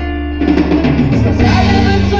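Live amplified band music. A held chord sounds at first; about half a second in, the full band comes in louder, with guitar and drums.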